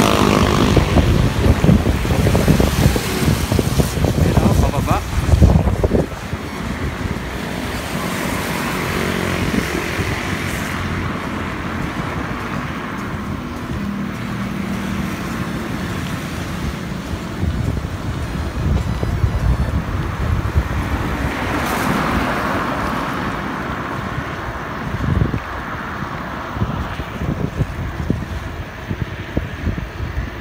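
Wind buffeting a bicycle-mounted camera's microphone while riding, heaviest in the first six seconds, over road noise from traffic on the wet highway. A swell of hiss comes about twenty-two seconds in.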